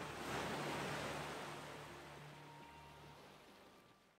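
Surf washing onto a beach, coming in suddenly and then slowly fading away, over the last low held chord of background music, which fades out too.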